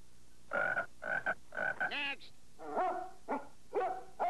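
A dog yipping and barking in short repeated calls: four quick even yelps, a rising one, then several more barks near the end.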